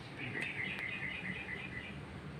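A small bird chirping in the background: a quick, even run of high chirps, about seven a second, that starts just after the beginning and stops shortly before the end.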